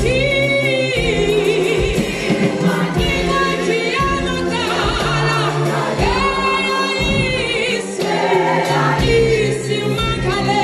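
Gospel choir singing a Zulu hymn in harmony, over low sustained bass notes that change about once a second.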